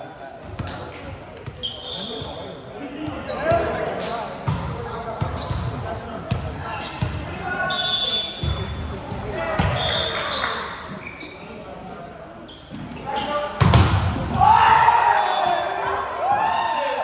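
Indoor volleyball play in a hall: a ball thudding on hands and floor at irregular intervals, with players' calls and shouts echoing around. A louder thud and a burst of shouting come near the end.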